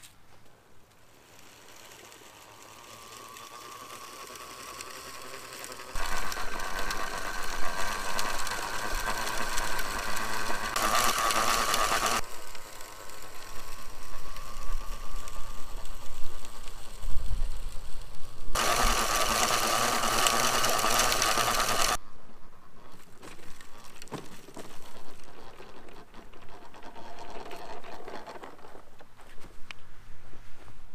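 Push-type broadcast spreader running as it is pushed, its wheel-driven gearing and spinning impeller giving a steady mechanical whir as granular humate is flung out. Faint at first, it grows loud about six seconds in, with two hissier, fuller stretches, then drops back.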